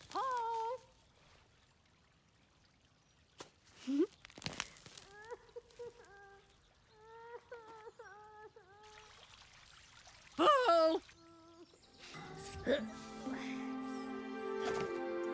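Short wordless vocal sounds from cartoon characters: brief hums, a run of small two-note calls, and a louder falling cry about ten seconds in. Soft music with held notes comes in near the end.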